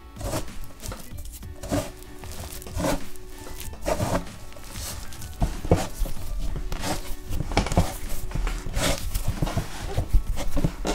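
Hands working fresh egg pasta dough on a wooden table: irregular pressing, squishing and scraping strokes, with heavier thumps from about halfway as the rickety table knocks under the kneading. Soft background music runs underneath.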